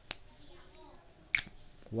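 Small plastic clicks from a whiteboard marker being capped and laid on the whiteboard: a light click just after the start and a sharp, louder click just past halfway.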